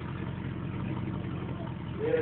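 Lifted 4x4's engine idling steadily with a low, even hum while the truck sits stationary with a front wheel up the articulation ramp.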